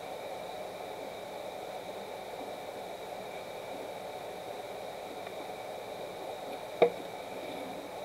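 Steady room noise, with a single sharp knock about seven seconds in as an aluminium drink can is set down.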